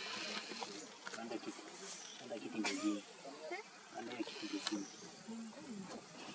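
Low, indistinct voices of people talking, with a few sharp clicks, the loudest about two and a half seconds in.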